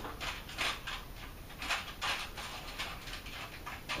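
Aluminium foil crinkling and crackling in short, irregular bursts as it is pressed and rolled around a raw meat loaf by hand.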